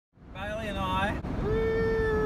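A young man's voice calling out, ending in one long held note, over the steady low rumble of a van on the road.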